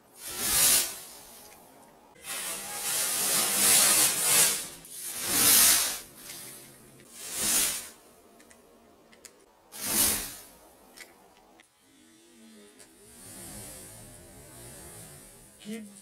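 Lycopodium (club moss) spore powder blown through a tube into a flame, going up as fireballs: five whooshing bursts in the first ten seconds, the second lasting a couple of seconds.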